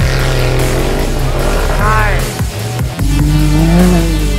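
Background music mixed with the engines of off-road race vehicles, revving up and down.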